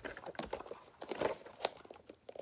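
Cardboard toy-car box being handled and pried open by hand: scattered crinkles and small clicks of card and packaging, with a couple of sharper snaps a little over a second in.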